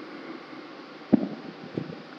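A sharp low thump about a second in, with a few softer knocks after it, over a steady fan-like room hum.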